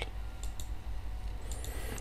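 A few faint clicks from the presenter's computer as the presentation advances to the next slide, over a steady low hum.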